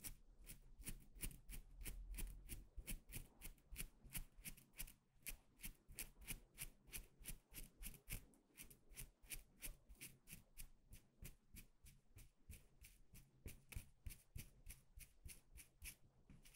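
Wooden eyebrow pencil drawing across the camera lens in quick short strokes: a soft, even scratching at about four strokes a second.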